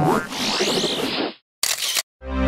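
Electronic logo-sting sound effects: a noisy swish with crossing rising and falling sweeps that cuts off sharply about one and a half seconds in, then a short noisy burst near the end.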